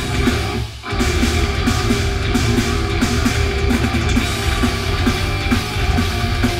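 Heavy metal band playing live: distorted electric guitars, bass and drums in an instrumental riff with no vocals. The band drops out briefly under a second in, then the riff comes straight back in.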